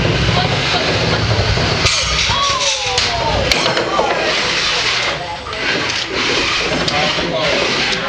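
Beetleweight combat robots running their motors as they drive across a plywood arena floor and clash, with a low rumble in the first couple of seconds and scattered sharp knocks of contact. Spectators' voices run over it.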